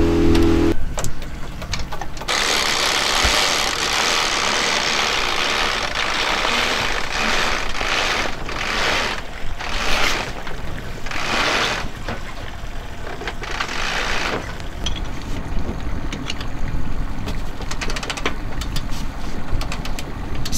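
Mainsail being hoisted: the halyard runs and the sail cloth rustles and flaps, in several surges as it is hauled up, over a steady low hum that sounds like the small outboard motor running. The sail goes up freely, with no effort.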